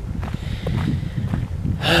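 Low rumbling background noise on a handheld camera's microphone while walking, with a sniff.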